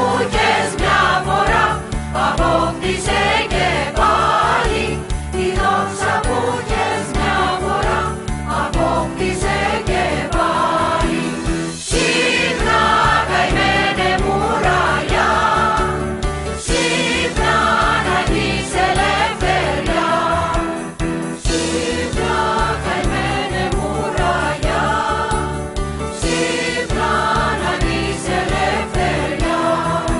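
Music: a Greek song, with voices singing wavering melodic lines over instrumental accompaniment.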